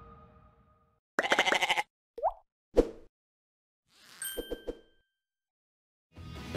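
Background music fading out, then a string of short edited sound effects: a quick rattling burst, a brief sliding pitch, a sharp click, and a soft whoosh with a few quick taps and a thin high ding.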